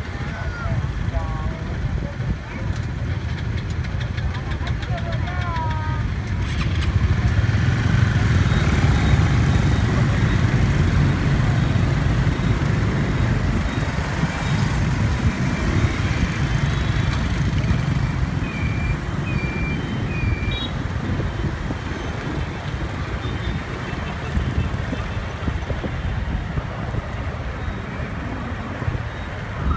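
Motorbike traffic: many scooter engines running close by, with a steady low engine and road rumble. It grows louder from about seven seconds in, as the bikes pull away from a stop and ride along the street.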